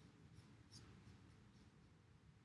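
Near silence, with a paintbrush faintly stroking watercolour paint onto paper: a couple of soft scratchy strokes in the first second over a low room hum.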